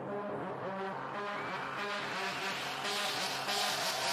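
Electronic dance music from a DJ mix, UK hardcore: a buzzy synth bassline with a bright noise sweep building up over the first few seconds, then crisp high pulses about twice a second.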